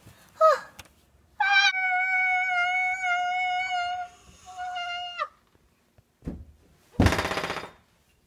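A boy wailing: a short cry, then one long high wail held for about four seconds with a brief catch near the end. A loud, rough burst of noise follows near the end.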